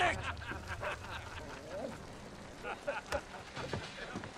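A man shouts once, then scattered men's voices and laughter follow over a low rumble that fades about a second in.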